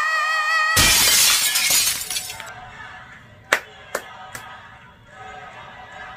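A female singer's final held note with vibrato, over backing music, cut off about a second in by a sudden loud burst of noise that dies away over the next two seconds. Then three sharp clicks, a little under half a second apart.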